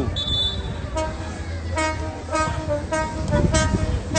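A horn tooting in short blasts, about five of them from about a second in, each at the same pitch, over a steady low rumble.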